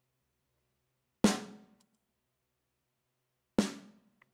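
A live snare drum sample played back on its own through a compressor, hit twice about two and a half seconds apart, each stroke sharp with a short ring as it dies away. It is being auditioned while the compressor's attack is tuned.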